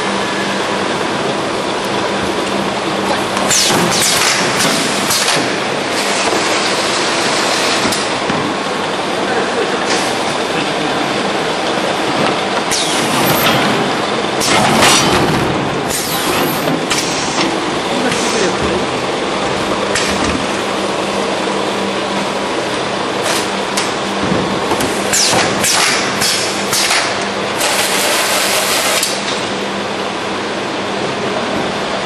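Automatic case-packing line running, with a steady machine hum and rolling conveyor noise as cartons of 5-litre oil jugs move through it. The run is broken several times by louder, brief rushes of noise from the machinery.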